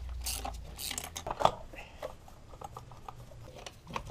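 Socket ratchet on a long extension clicking in quick, even strokes as it works the 8 mm bolts of the throttle body, followed by sparser light clicks and rattles of the tool and loosened parts.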